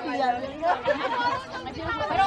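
People chatting close to the microphone, voices running on through the whole moment.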